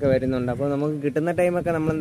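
A man speaking continuously in Malayalam.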